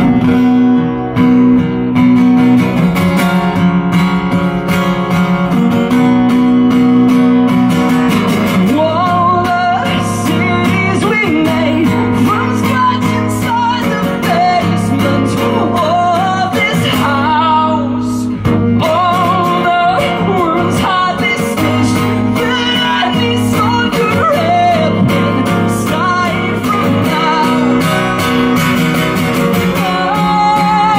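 A steel-string acoustic guitar strummed in steady chords, alone for about the first eight seconds. A man's voice then comes in singing over it, holding long, wavering notes.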